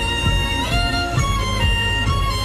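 Violin playing held notes of a pop melody, moving to a new pitch a few times, over a backing track with a steady beat and deep bass.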